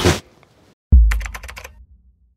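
Edited title-card transition sound effect: a sudden deep boom about a second in, then a quick run of sharp clicks, about ten a second, fading out.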